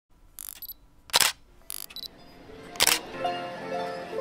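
Logo-intro sound effects: two short double clicks like a camera shutter, each followed by a loud sharp hit. Music with held notes starts about two and a half seconds in.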